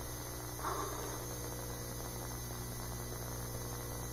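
Steady low electrical hum with hiss, the background of a room recording, with one faint brief sound a little under a second in.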